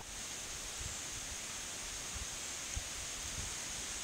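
Faint, steady forest background ambience: an even hiss with a thin high-pitched band running through it and a faint low rumble underneath, with no distinct event.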